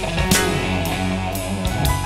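Progressive rock band recording: electric guitar over a steady bass line, with regular drum and cymbal hits.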